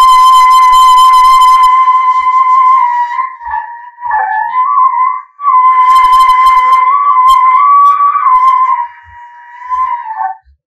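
Long, steady, high notes blown on a long white tube held to the mouth and played into a microphone, with a brief break about five seconds in and a few small pitch steps before it fades near the end.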